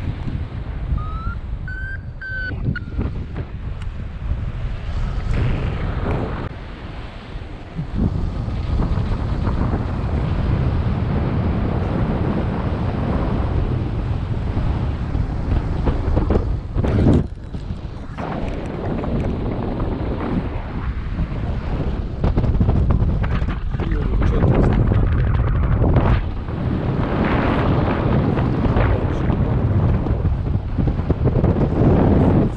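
Wind rushing steadily over the microphone of a paraglider pilot's harness-mounted camera in flight. There is a brief faint rising tone about two seconds in, and a sharp knock a little past the middle.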